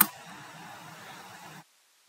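Faint steady hiss of the recording's background noise in a pause between sentences, cutting off to dead silence about one and a half seconds in.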